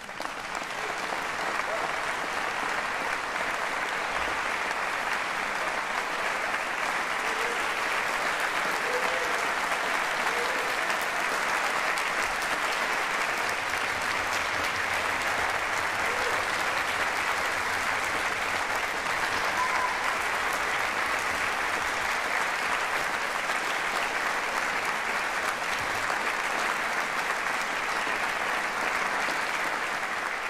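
Concert audience applauding, breaking out suddenly from silence at the close of the piece and continuing steadily.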